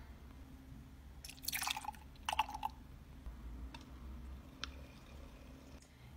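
Milk being poured into an electric milk frother: two short splashing pours about one and a half and two and a half seconds in, then a single click near the end.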